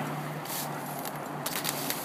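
Stihl Kombi 130R powerhead running with its HL-KM hedge trimmer attachment cutting through blackberry brambles: a steady engine hum under a hiss, with scattered clicks.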